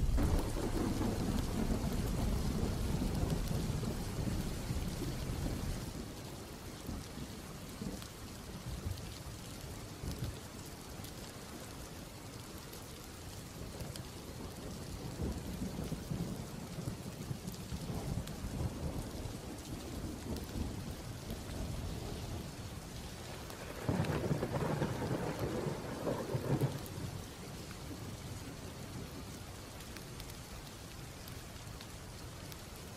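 Steady rain with thunder: a low rumble at the start that fades away over the first six seconds or so, and another louder peal about three-quarters of the way through.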